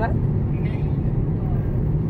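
Steady low rumble of a car's engine and tyres heard from inside the cabin while cruising along a highway.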